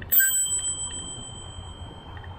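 A single ding of a handlebar bicycle bell on the e-bike, ringing clearly and fading over about a second and a half: a warning to walkers ahead on the trail. Steady low tyre and wind noise from the ride runs underneath.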